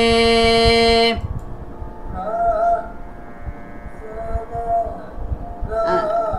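Carnatic singing in raga Todi: one long held sung note stops suddenly about a second in. A fainter, higher voice then sings back short, wavering phrases, twice, and starts again near the end.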